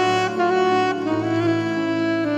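Instrumental worship music: a saxophone plays a slow melody, stepping from note to note with a slight bend, over a sustained low accompaniment.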